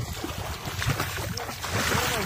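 Muddy floodwater sloshing and splashing around people wading and working bamboo polo fish traps, with wind rumbling on the microphone.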